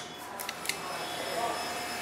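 Quiet handling of stripped electrical wire and pliers, with two light clicks a little under a second in over a steady low background.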